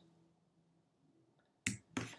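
Near silence, then about one and a half seconds in a sharp click followed by a second, softer click: a computer mouse click advancing the presentation slide.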